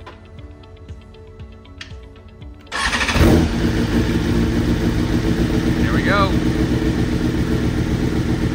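A BMW sportbike's inline-four engine is started about three seconds in: it catches at once and settles into a steady idle. This is its first start on a freshly flashed ECU tune.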